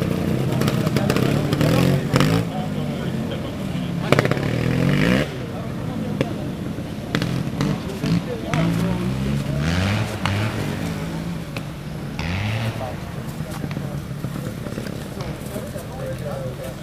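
Trial motorcycle engines running, revved in short rising blips several times.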